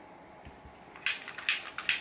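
Kitchen butane torch being triggered over and over, a sharp click with a short burst of hiss each time, about four in quick succession starting about halfway through, as the faulty torch fails to light.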